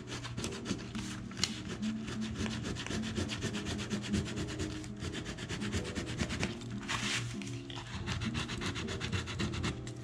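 The back of a folding knife rubbed over a paper pattern laid on oak tag, burnishing it flat in rapid, short scraping strokes. There is a longer, brighter scrape about seven seconds in.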